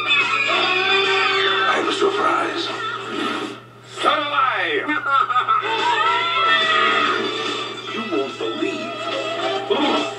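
Movie trailer soundtrack: comic music under clips of voices shouting and yelling, with a brief drop about three and a half seconds in followed by a falling glide. A steady low hum runs underneath.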